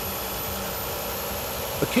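Volvo tractor-trailer driving at highway speed: steady low engine and road noise with a faint even hum.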